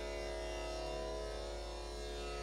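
Tambura drone sounding alone: a steady, unbroken chord of held overtones on a fixed pitch, with no voice or percussion.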